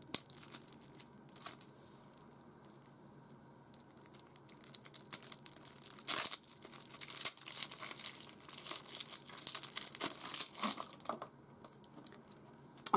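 Hands picking at and tearing open the sticky wrapping of a boxed card game, in scattered crinkles and rips, with the loudest tear about six seconds in.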